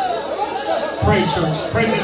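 Several voices calling out and praying aloud at once, overlapping, in a large room.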